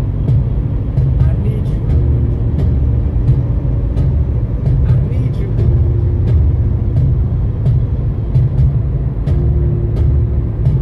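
Steady low road and engine rumble inside a car's cabin at highway speed, with a song playing on the car's stereo.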